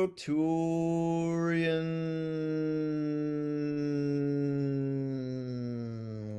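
A man's voice toning one long held note for sound healing, chant-like, its pitch slowly sinking. A high overtone dips and rises about a second and a half in.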